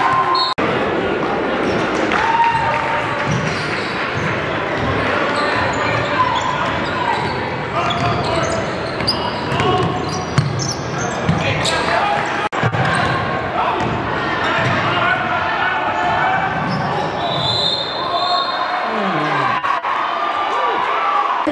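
Live court sound of a basketball game in a gym: the ball bouncing on the hardwood, short high sneaker squeaks, and spectators' and players' voices and shouts running underneath.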